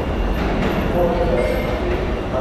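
R160 subway train arriving at an underground station platform, a steady rumble of wheels and motors as it rolls in slowly, with a brief thin squeal about one and a half seconds in.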